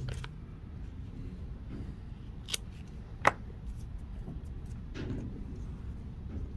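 Fly-tying scissors snipping twice, about a second apart, trimming off excess material at the vise.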